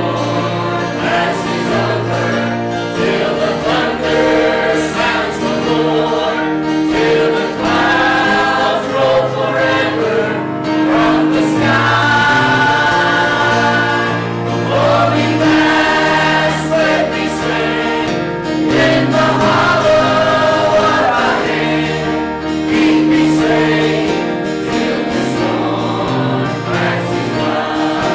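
Mixed church choir of men's and women's voices singing a gospel hymn, with instrumental accompaniment under the voices.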